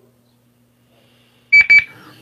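Two quick, loud high-pitched electronic beeps about a second and a half in, after near silence: a push-to-talk tone as the remote caller keys in to answer.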